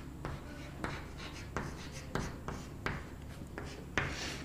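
Chalk writing on a chalkboard: a string of short taps and scrapes, irregularly spaced, as a line of words is written out.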